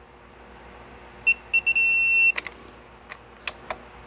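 Digital torque wrench beeping as a thermostat housing bolt is tightened: three quick short beeps, then one longer steady beep, the wrench's signal that the set torque of 9 Nm has been reached. A sharp click follows, then a few light clicks.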